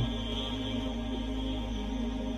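Soft background music: a steady drone of held tones, chant-like in character.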